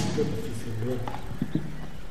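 A person speaking quietly, with a sharp click at the start and a few light knocks about a second in.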